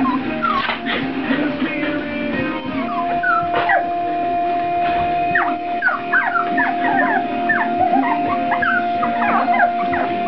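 Lhasa Apso puppies yipping and whimpering in short, high squeaks as they play, busiest in the second half, over background music with one long held note.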